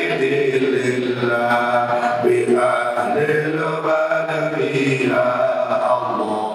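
A man chanting into a microphone in long, drawn-out melodic phrases, each note held and then sliding to the next: a devotional Arabic chant closing a prayer.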